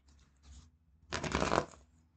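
A deck of tarot cards being riffle-shuffled by hand: a short burst of rapid card flutter about a second in, after softer rustling as the deck is split.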